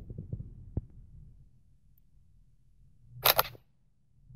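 Smartphone camera app's shutter sound as a photo is taken: a quick, loud double click about three seconds in. A few faint clicks come in the first second before it.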